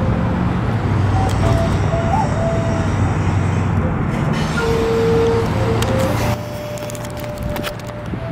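Wooden end-blown flute playing a few slow, held single notes, one bending up slightly about two seconds in. A steady low rumble lies under it and drops off about six seconds in.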